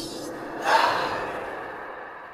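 A breathy, gasp-like horror sound effect about two-thirds of a second in, trailing off in a long echo that fades away.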